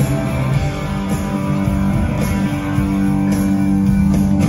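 Southern rock band playing live: electric guitars ringing out chords over drums, with cymbal hits about once a second, heard loud from the audience of a theatre.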